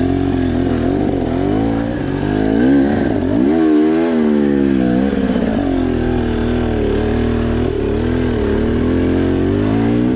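KTM 300 two-stroke dirt bike engine ridden on singletrack trail, the revs rising and falling with the throttle, with a sharper rev-up about three to four seconds in.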